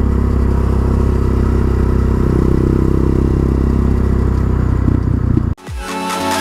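Quad bike (ATV) engine running steadily at a cruise, heard from the rider's seat. About five and a half seconds in it cuts off abruptly and electronic music with a heavy bass begins.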